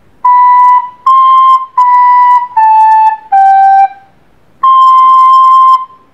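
Plastic soprano recorder playing a slow phrase of separate tongued notes: B, C, B, A, G, then after a short pause one long held high C.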